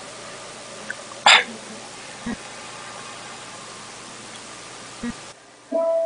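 Room hiss broken by one short, sharp noisy burst about a second in, the loudest sound here, with a couple of faint knocks after it. Near the end the keyboard accompaniment begins with a held note, the start of the piano introduction.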